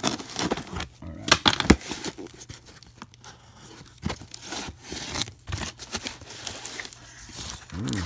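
Box cutter slicing the clear packing tape on a cardboard box, then the flaps pulled open with tape tearing and cardboard scraping. A quick run of sharp rips and cracks comes in the first couple of seconds, then looser rustling and scraping.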